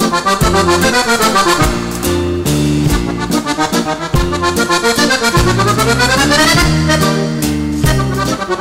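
Button accordion playing a fast liscio dance tune live, with rapid runs of notes: one falls about a second in and a long one rises around six seconds in. Under it run stepping bass notes and a drum beat.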